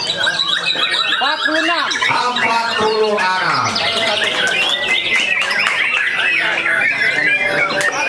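Many caged white-rumped shamas (murai batu) singing at once in competition, a dense overlapping tangle of whistles and chirps that grows thicker in the second half, with people's voices mixed in.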